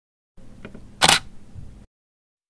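Intro sound effect: a faint click about half a second in, then one sharp, loud click-snap about a second in, over a low background hiss that cuts off suddenly near the end.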